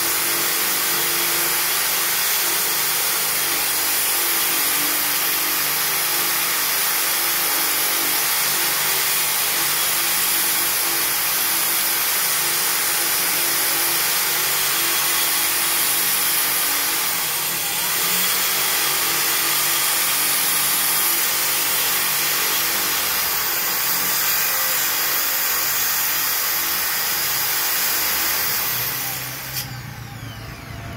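Corded electric drill running steadily under load, its water-wetted bit grinding a valve hole through the wall of a thick glass jar. The water keeps the glass from heating up and cracking. The sound dips briefly about halfway through and stops just before the end.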